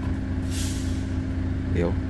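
Short hiss of compressed air, about half a second in, from a Volvo truck's trailer brake valve as the trailer hand-brake lever is pulled up to its second stage. The truck's diesel engine hums steadily underneath.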